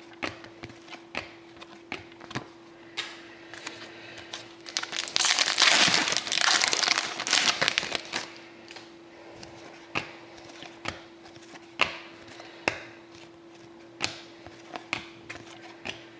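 Plastic card-pack wrapper being crinkled and torn for a few seconds near the middle. Before and after it come separate sharp clicks and snaps as trading cards are flipped and set down one at a time, over a faint steady hum.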